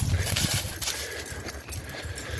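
Footsteps crunching and rustling through dry leaf litter on a woodland trail, an irregular run of soft thuds and crackles.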